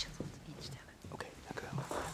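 A woman whispering close to a desk microphone, with scattered small clicks and rustles of people moving.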